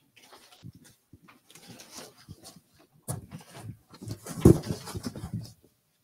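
Rustling and knocking of cardboard display boards being handled near a microphone, with a loud, deep thump about four and a half seconds in.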